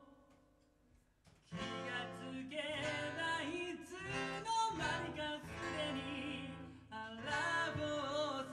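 Live band music: a man singing over strummed acoustic guitar and electric guitar. It opens with a near-silent break of about a second and a half, then the band and the vocal come back in together.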